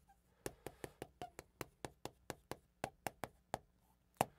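Chalk writing on a chalkboard: a quick, uneven run of sharp taps as each stroke of the characters hits the board, about four or five a second.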